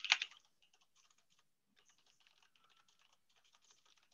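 Faint typing on a computer keyboard: runs of quick key clicks with short pauses between them. A brief, louder sound comes at the very start.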